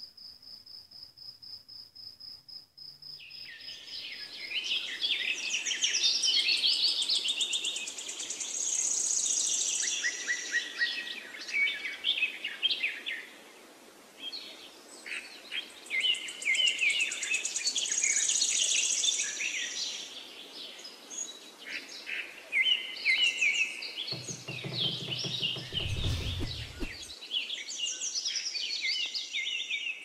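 Crickets chirping in a steady, rapidly pulsing high trill for the first few seconds, then a chorus of many birds singing and chirping takes over. A brief low rumble comes about 24 seconds in.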